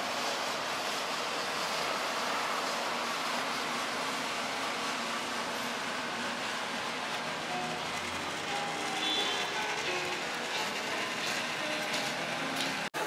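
Steady outdoor traffic noise, with background music starting to come through about halfway in.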